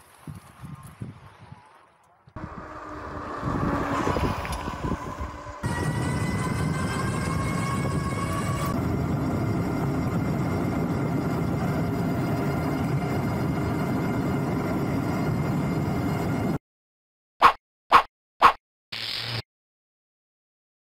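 Fat-tire e-bike's rear hub motor whining and rising slowly in pitch as the bike picks up speed, under a loud steady rushing of wind and tyre noise. The sound cuts off abruptly and is followed by a quick run of short cartoon-like pops.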